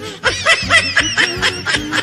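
Women laughing hard, a quick run of repeated laughs.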